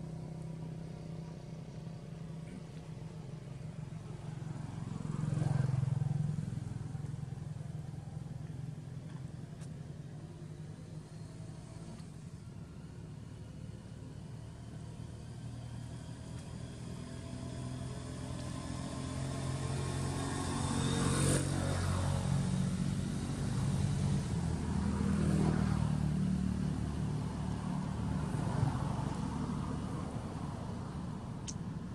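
Engines of passing motor vehicles, a steady low hum that swells as a vehicle goes by about five seconds in and again twice in the last third.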